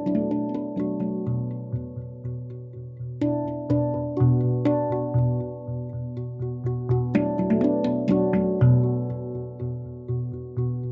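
A steel handpan played by two people at once with their fingertips: many notes struck several times a second, each ringing on and overlapping the next in a slow melodic pattern, with a deep low note sounding underneath.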